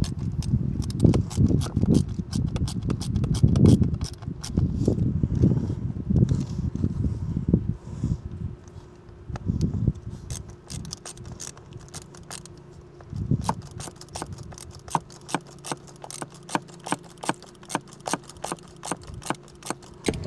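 Hands working a plastic Rain Bird sprinkler valve in its valve box as it is reassembled: dull knocks and rubbing through about the first half, then a run of light clicks a few times a second.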